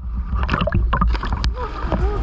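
Sea water sloshing and splashing against a camera at the waterline beside a dive boat, over a steady low rumble, with a sharper splash about one and a half seconds in.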